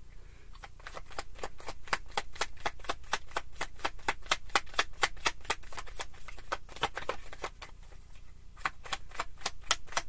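Tarot deck being shuffled overhand, the cards slapping and clicking against each other about five times a second.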